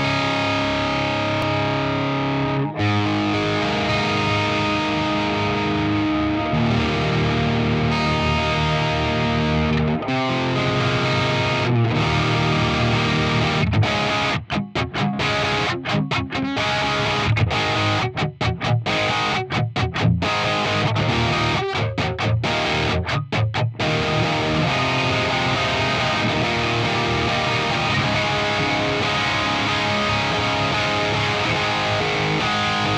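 Distorted electric guitar played through an impulse response of a Bogner 4x12 cabinet loaded with Celestion Vintage 30 and G12T-75 speakers, in a blended multi-mic mix. It opens with ringing, held chords. About halfway through comes a riff of short stabs with sharp stops, and near the end the playing runs on steadily.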